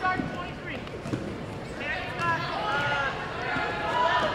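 A basketball bounced on a gym floor a couple of times, near the start and about a second in, as a free-throw shooter readies at the line. Voices of people talking in the gym are heard over it.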